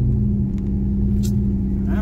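Cammed Ram pickup's Hemi V8 running steadily at low revs, heard from inside the cab.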